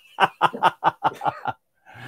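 A man laughing in a quick run of short, rhythmic chuckles, about eight or nine in a second and a half, dying away shortly before the end.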